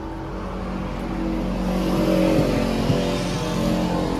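A motor vehicle driving past on the street: engine hum and tyre noise getting louder over the first two seconds and staying loud to the end.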